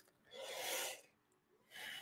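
A man's breathing close to a microphone: two soft breaths, the second starting just under a second after the first ends.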